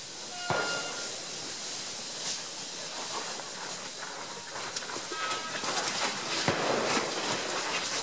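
Field sound of a herd of Asian elephants walking close by over dry leaf litter and gravel: a steady rustling hiss with scattered crunches that grows louder as they come up near the end. A short high tone sounds about half a second in.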